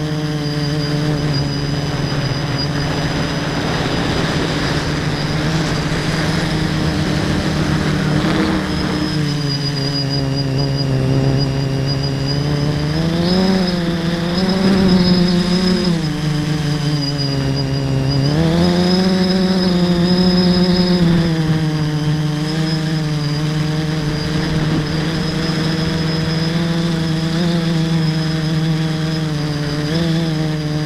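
A mini tricopter's three electric motors and propellers, heard from the camera on board, whining steadily with a rushing of air, the pitch rising and falling with the throttle. The pitch climbs and wavers about halfway through, drops, then climbs again.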